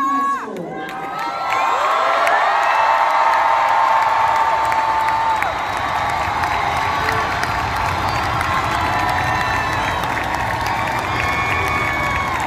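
Large crowd of graduates and audience cheering and screaming, with many voices shouting at once and a few long high screams. It swells about a second and a half in and stays loud.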